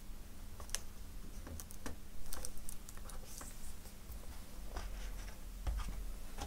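Hands connecting and handling a laptop display panel and its display cable: a scattered series of small, light plastic-and-metal clicks and taps, a little louder about two seconds in and again near the end.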